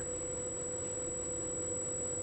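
Steady electrical hum, one constant mid-pitched tone, over an even background hiss, with no other events.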